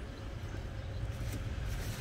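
Steady low background rumble, with a faint brief handling sound or two.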